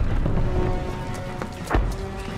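Tense action film score with heavy low percussion hits over a low rumble. The loudest hit starts just as the sound begins, and another sharp strike comes near the end.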